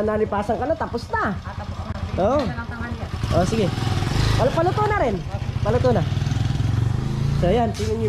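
A small engine running steadily, a fast low chugging heard throughout, with several voices calling out over it.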